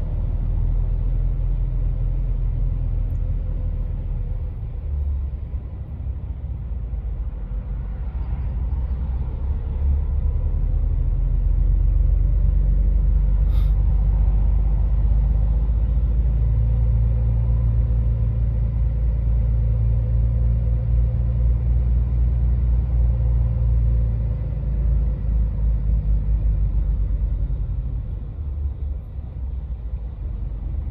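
Heavy truck's diesel engine running with a low, steady rumble while creeping forward in a traffic queue. It grows a little louder about ten seconds in and eases near the end, with a single sharp click about halfway through.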